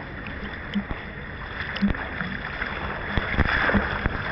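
Swimmer doing front crawl in a pool, arm strokes splashing and water lapping close to the microphone, the splashing growing louder near the end as he comes closer.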